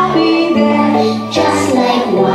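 Children singing a song over instrumental accompaniment, the notes held and moving step by step.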